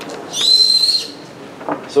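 A short, high-pitched whistling tone, rising briefly and then held for about half a second.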